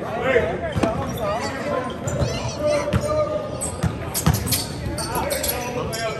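A basketball bouncing on a hardwood gym floor: several separate dribbles, each a sharp thud, among players' and spectators' voices.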